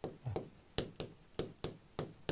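Marker pen writing on a board: a series of about eight short, faint taps and scratches as the strokes of a word are drawn.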